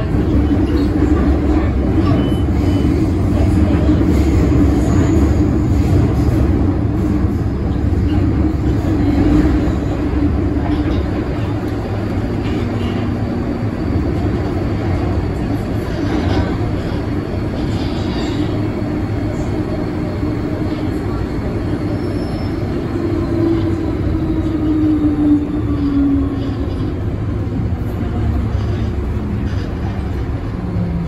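MTR M-train electric multiple unit running through a tunnel, heard from inside the car: a steady low rumble of wheels on rail under a motor tone. The tone falls in pitch about three quarters of the way through as the train slows.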